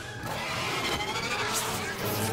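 Cartoon monster sound effect from the episode's soundtrack: a noisy rumbling rush as the Tantabus materialises, brightening with a hiss near the end.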